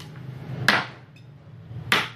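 Kershaw Camp 12 machete chopping into a wooden stick laid on a wooden chopping block: two sharp chops about a second and a quarter apart, the first under a second in and the second near the end.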